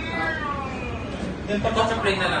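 Speech: a high voice sliding down in pitch over the first second, then another voice starting near the end.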